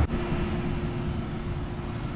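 Steady outdoor background noise: a low rumble with a faint, even hum running under it, and no distinct events.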